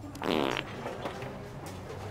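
One loud, short fart noise about a quarter second in, lasting under half a second and with a rippling, sputtering quality: a fake fart sound played as a prank.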